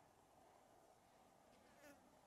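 Faint buzzing of a flying insect in near silence, with a brief louder pass near the end.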